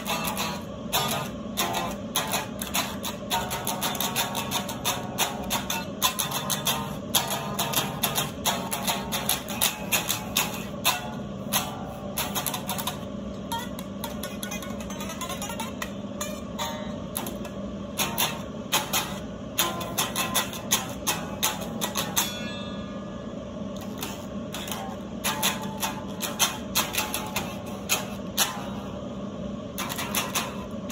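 Acoustic guitar strummed in quick, sharp strokes, an instrumental lead-in before the singing of a demo song. The strumming thins out briefly about two-thirds of the way through.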